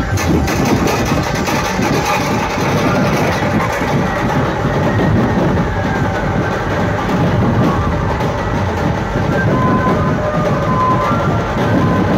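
Loud dhumal band music played through a truck-mounted wall of horn loudspeakers, dense and continuous, with a melody line coming in near the end.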